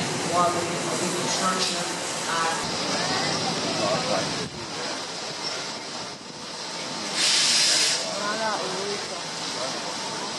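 Indistinct talking over a steady background rush, with one loud, sharp hiss lasting under a second about seven seconds in.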